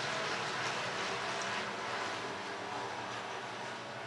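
A pack of dirt-track hobby stock race cars running down the far straightaway. Their engines are heard as a steady, distant drone that slowly fades.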